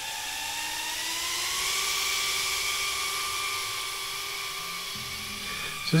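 BetaFPV Pavo Pico cinewhoop's small motors and ducted propellers whining steadily in flight. The pitch rises a little over the first second or so as it lifts off, then holds and fades slightly as it flies away.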